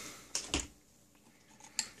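Two short, light clicks in quick succession about half a second in, then quiet with one faint tick near the end.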